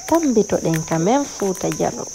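Insects in the bush making a steady high-pitched buzz without a break, with a person talking loudly over it.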